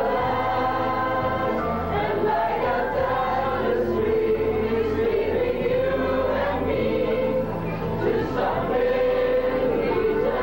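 Choir of young men singing from song sheets, holding long notes.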